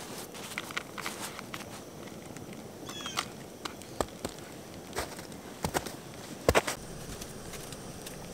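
Scattered clicks and crinkles of a foil food pouch being handled, the loudest about six and a half seconds in, with a brief high-pitched call about three seconds in.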